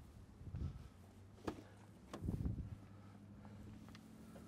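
A few faint clicks and soft thuds as the door of a 2013 Chrysler 300S is unlatched and swung open, with a sharp click about a second and a half in. A faint, low, steady hum comes in about halfway through.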